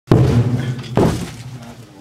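A metal trash can struck twice with a large mallet, about a second apart. Each hit is loud and rings on, and the first is the louder.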